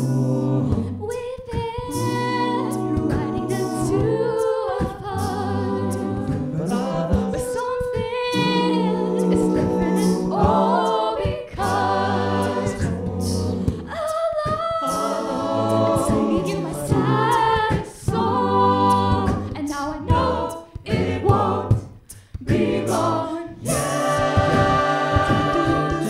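Mixed-voice a cappella group singing a pop song: a woman's lead voice over close backing harmonies and a low sustained bass part, with vocal percussion keeping the beat.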